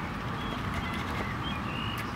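Outdoor background sound: a steady low rumble with several short, high bird chirps scattered through it.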